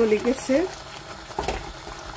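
A wooden spatula stirring a thick, simmering tomato curry in a steel pot, with a faint sizzle from the pan and one knock of the spatula about one and a half seconds in.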